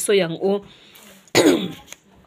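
A woman clears her throat with a single short cough about a second and a half in, after a brief pause in her speech.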